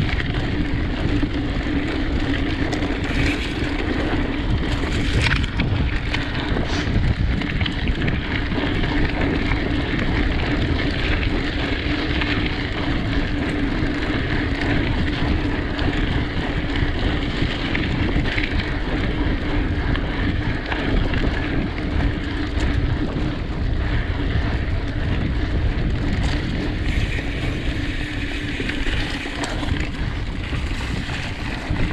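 Wind rushing over the microphone of a mountain bike's on-board camera, mixed with knobby tyres rumbling and rattling over a dirt forest trail at speed. A few sharp knocks come from bumps early on.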